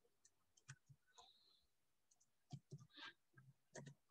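Faint computer keyboard keystrokes: a few scattered clicks at near silence.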